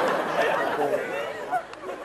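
A man's speech over a murmur of many voices chattering, the murmur fading away by about halfway through.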